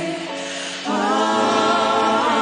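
Live choir of voices singing sustained gospel-style chords. They soften briefly, then swell into a new held chord just under a second in.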